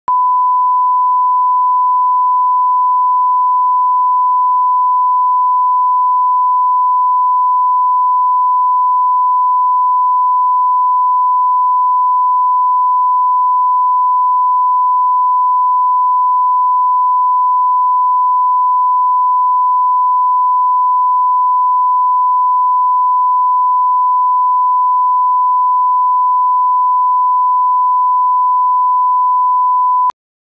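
Broadcast line-up test tone accompanying colour bars: a single steady pure tone held at one pitch, which cuts off abruptly at the end.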